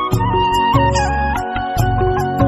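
Background music: a held melody line over a steady bass and light percussion.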